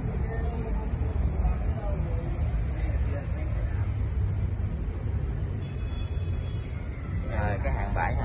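A steady low rumble throughout, with faint voices in the background during the first few seconds.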